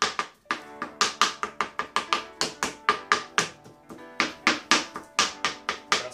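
Kitchen knife chopping banana on a white plastic cutting board, rapid sharp taps about five a second, over background music.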